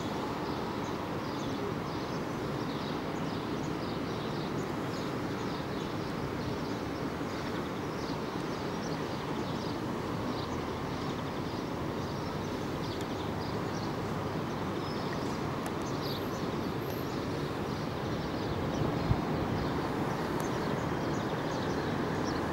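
Steady distant city traffic hum heard from high above the rooftops, with faint short high chirps repeating throughout and a brief knock about nineteen seconds in.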